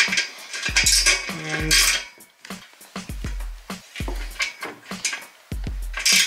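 Sharp metallic clicks and clinks of a Wera Zyklop Mini ratchet with a size 8 hex bit working on a tight radiator valve connection, which will not shift without more leverage. Background music with a deep bass beat runs underneath.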